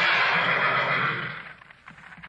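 Horses whinnying together from an old film soundtrack, tailing off about a second and a half in. It is the film's running gag, in which horses whinny at the name 'Frau Blücher'.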